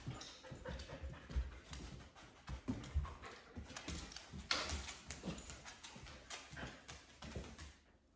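Border collie's toenails clicking irregularly on a hard kitchen floor as it moves about, faint, with a few brief puffs of breath.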